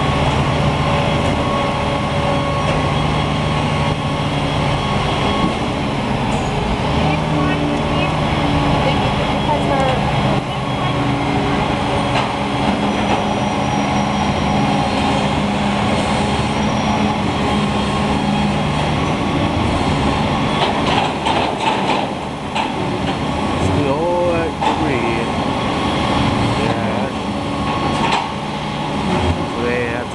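Diesel refuse truck engine running steadily, its hum holding several steady tones. A short run of knocks comes about twenty seconds in.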